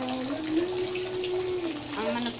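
Water running steadily in a bathroom, a constant hiss, with a single held hummed note low beneath it for about a second in the middle.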